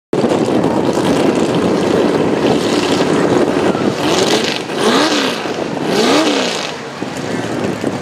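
Econo Rod pulling tractor engine running loud at the start of a pull, blipped twice about four and six seconds in, the pitch rising and falling with each blip.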